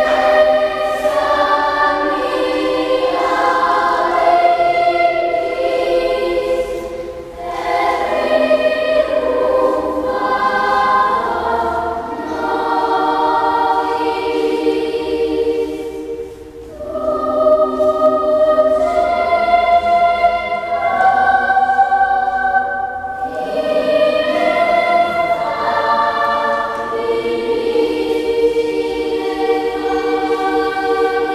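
Children's choir singing a sacred piece in long, sustained phrases, with short breaks between phrases about seven and sixteen seconds in.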